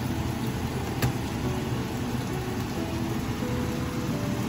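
A steady low rumble, with a single sharp tap of a chef's knife on a plastic cutting board about a second in.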